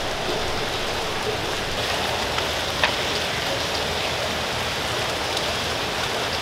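Water splashing steadily in an indoor fountain basin, an even rush of noise. There is a single faint click near the middle.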